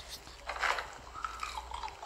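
Close-miked eating sounds: crunchy fried snacks being bitten and chewed, in short crackly bursts.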